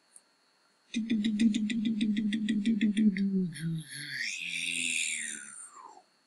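A man's voice making a playful sound effect: from about a second in, a rapid pulsing hum for about two seconds, then wavering tones that fall in pitch, with a high whistle-like tone sliding downward near the end.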